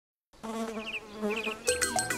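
A buzzing, insect-like drone in two short phrases, then music starts near the end.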